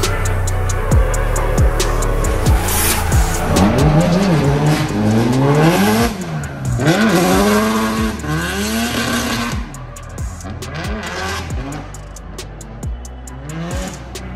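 Nissan S13 240SX's turbocharged SR20DET four-cylinder revving up and down repeatedly while drifting, with tyre squeal, over background music with a beat. The engine is loudest through the first two-thirds and fades after about ten seconds, leaving mostly the music.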